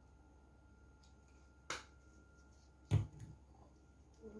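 A spice shaker and a glass sauce bottle handled over a mixing bowl: a sharp click a little under two seconds in, then a louder, heavier knock about a second later, with a few small taps after it.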